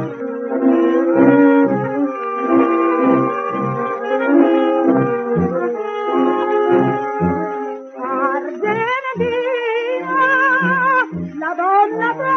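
Instrumental break from an Italian song recording: a brass-led dance-band passage of held chords over a regular pulsing bass. In the last few seconds a wavering melody line with strong vibrato comes in on top. There is no treble above the upper midrange, as on an early recording.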